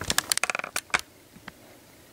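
A rapid clatter of small plastic clicks and knocks for about a second, then two single clicks, from Lego minifigures and pieces being handled and moved.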